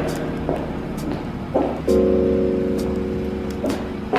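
Background music: held chords, changing about two seconds in, with a few light taps.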